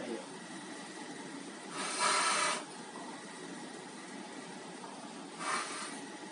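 Two short rushes of breath, each about half a second long and without any pitch, about three seconds apart, over a faint steady room hiss.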